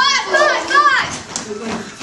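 Young people's voices crying out: three short, high yelps in the first second, then quieter shouting.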